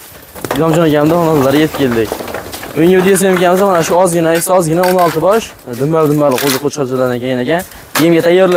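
A man talking at length in the foreground.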